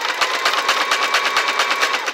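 Domestic electric sewing machine stitching a button on with a zigzag stitch, the needle swinging back and forth through the button's holes while the fabric stays in place under a button-sewing foot. A rapid, even rattle of needle strokes over a steady motor whine.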